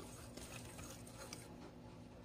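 Faint scraping of a metal fork stirring egg and sugar into flour in a ceramic bowl, with a few light ticks, over the steady low hum of a washing machine running.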